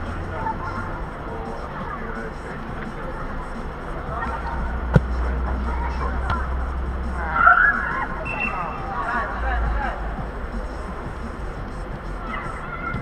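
Amateur indoor football: players' shouts echoing across a large inflated dome over a steady low rumble, with one sharp ball strike about five seconds in and a louder burst of shouting a couple of seconds later.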